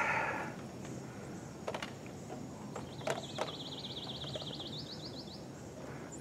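Quiet outdoor ambience. About three seconds in, a bird gives a high, fast-wavering trill lasting a little over two seconds, with a few faint clicks around it.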